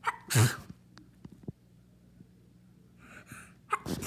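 A girl sneezing, with two short, loud bursts, one about half a second in and one near the end. The second follows a brief breathy intake.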